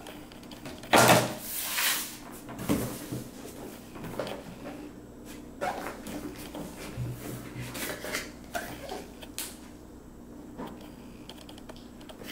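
Cardboard product box being handled: a loud scraping rustle about a second in, then scattered light knocks and rubs as the box is turned over and its lid lifted.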